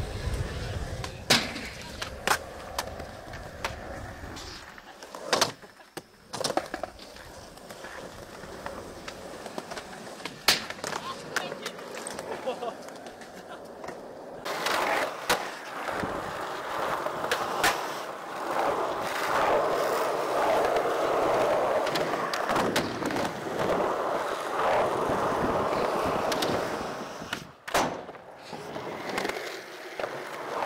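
Skateboard wheels rolling on concrete, with sharp clacks of the board against the ground from popped tricks and landings scattered throughout. The rolling gets louder from about halfway through.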